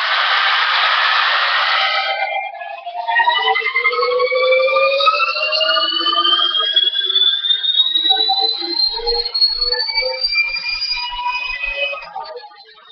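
Traxxas E-Maxx electric monster truck's Mamba Monster brushless motor and drivetrain revving under throttle. A loud rush of whirring noise comes first, then a high whine that climbs steadily in pitch over the rest as the wheels spin up.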